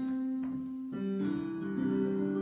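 Electronic keyboard played with a piano voice: a chord struck at the start and held, then new notes struck about a second in and left ringing.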